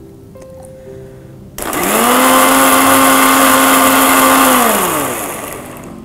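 Electric mixer grinder starting suddenly about a second and a half in, its motor whine rising quickly to speed, running steadily for about three seconds while grinding roasted coconut and whole spices with a little water into a paste, then winding down with a falling pitch.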